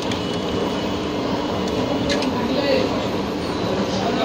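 Indistinct background voices over a steady rumbling hum.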